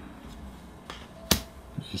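A single sharp click a little past the middle, with a couple of fainter ticks around it: a playing card being put down on a board-game board.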